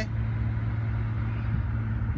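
A steady low hum over a rumbling background, like a motor running.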